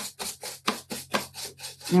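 Paintbrush scrubbing across an antique washboard in quick short strokes, about four or five a second: dry-brushing paint on with a nearly dry brush.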